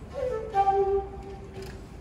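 Improvised shakuhachi playing: a short phrase that starts just after the opening, steps down in pitch to a held note, and fades out before the end.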